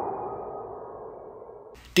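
Fading tail of an electronic intro sound effect, a swelling tone that dies away steadily over about two seconds.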